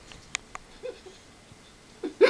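Mostly quiet, with two short clicks about a third and half a second in and a brief muffled vocal sound a little before one second.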